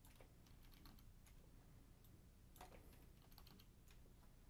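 Near silence with faint, irregular clicks of a computer mouse and keyboard over a low steady hum, with a small cluster of clicks in the second half.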